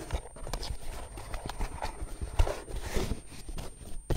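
A small corrugated cardboard box being folded together by hand: a run of light knocks and taps as the flaps are creased and pushed into place, with brief scrapes of cardboard between them.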